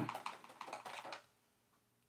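A quick run of faint, light clicks for about a second, then near silence.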